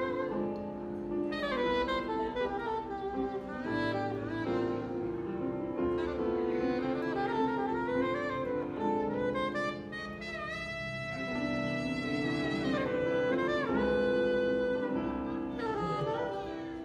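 Saxophone playing a melodic solo over sustained electronic keyboard chords in a disco-pop song, with one long held note a little past the middle.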